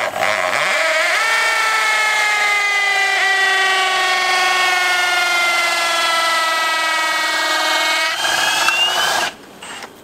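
Cordless drill spinning a hay core probe into a round hay bale: a steady motor whine that slowly drops in pitch under the load. The sound shifts about eight seconds in and stops about a second later.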